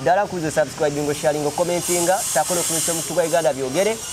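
A man talking steadily, with a high hiss joining in under his voice from about halfway through.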